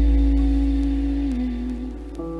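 Performance music: a deep bass note fading slowly under a held higher tone that steps down slightly in pitch past halfway.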